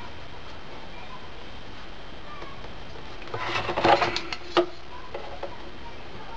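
Handling noises of a metal ruler and a cardboard milk carton on a cutting mat: a short cluster of clicks and rustles a little past the middle, over a steady low hiss.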